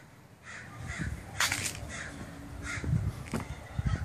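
A bird calling, a string of short harsh calls about every half second, the loudest about a second and a half in.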